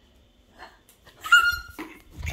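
A short, high-pitched squeal about a second in, holding an almost steady pitch for about half a second, with scattered handling knocks around it.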